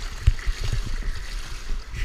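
Pool water splashing and sloshing close by as a swimmer comes into the wall, with uneven low thumps.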